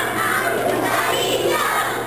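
Many young children's voices singing and shouting together at once, loud and unbroken.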